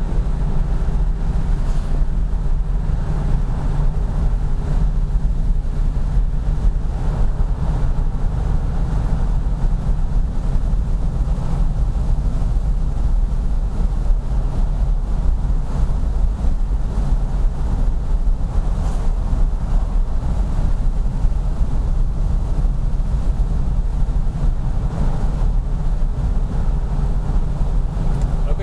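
Fuel-injected Chrysler 440 cubic-inch (7.2 L) V8 of a 1974 Jensen Interceptor, pulling steadily up a mountain pass with a deep, even throb and no big revving. It is heard inside the cabin, with road and wind noise under it.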